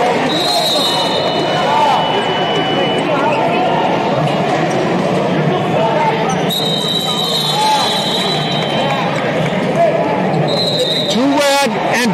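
Hubbub of many overlapping voices echoing in a large arena, cut through by several long, steady high tones. Near the end, one loud voice calls out close by.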